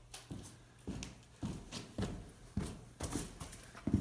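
Footsteps on a concrete floor, about two steps a second.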